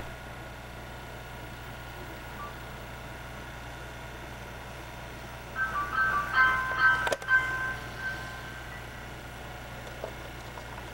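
A steady low hum, then about halfway through a short tune of clear chiming notes lasting a couple of seconds, with a single click in the middle of it.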